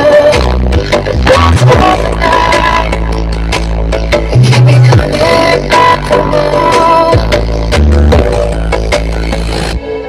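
DJ dance music played very loud through towering stacked loudspeakers of a sound-horeg rig, with heavy bass notes under a busy upper melody. The bass cuts out briefly just before the end.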